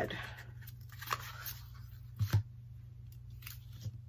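Soft handling sounds of a plastic ribbon spool and red ribbon being unwound and pulled taut: a few faint clicks and knocks, two close together a little past halfway, over a low steady hum.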